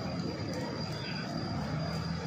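Steady low rumble of street traffic, with a faint high steady whine above it.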